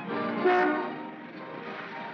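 A car horn sounds once, briefly, about half a second in, as the car rolls into the garage; the film score fades under it.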